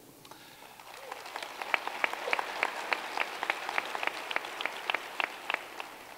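Audience applauding, with separate hand claps standing out; it builds up after about half a second and fades away near the end.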